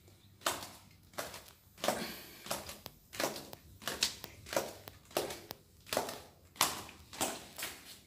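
Footsteps walking down an indoor staircase, one step about every two-thirds of a second, each footfall a short sharp tap.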